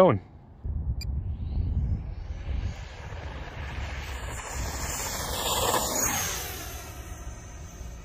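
The 64 mm electric ducted fan of a small RC jet, the E-flite F-15 Eagle, whining as it throttles up for takeoff and climbs away. It is loudest around five to six seconds in as the jet passes, then fades. A low rumble runs underneath.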